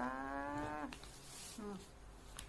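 A woman's drawn-out "hmm" hum on one steady pitch, lasting about a second, then a short falling "hm" near the end.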